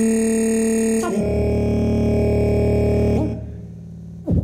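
Electronic music of layered, steadily held tones. The chord changes abruptly about a second in, and the sound drops away sharply a little after three seconds.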